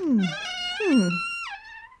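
Cartoon-style creak of small wooden double doors swinging open: a sharp click, then a long wavering squeal that swoops down in pitch twice and drops again near the end.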